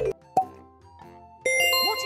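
Cartoon-style transition sound effects over faint background music: a falling-pitch sweep ends right at the start, a short pop comes about a third of a second in, and a bright ringing chime starts about a second and a half in.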